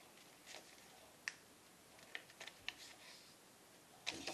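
Near silence with a few faint short clicks and rustles of a sheet of paper being folded and creased by hand against a wooden table; the sharpest click comes about a second in.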